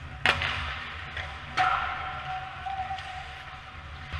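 Two sharp cracks of ice hockey play about a second and a half apart, over a low steady rink hum; the second crack rings on briefly.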